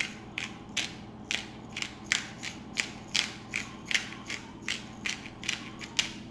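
Plastic spice grinder of steakhouse seasoning (peppercorns, garlic and salt) twisted by hand, grinding in a steady run of short rasps, about three a second.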